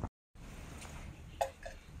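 A brief dead dropout, then a faint steady background with two short soft clicks about a quarter second apart, a little past the middle.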